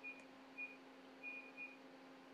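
Near silence over a steady low hum, with four faint, short high-pitched beeps in the first second and a half.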